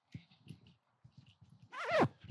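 Faint open-air sounds of a football training session: a few soft low thuds, then a brief distant shout from a player near the end.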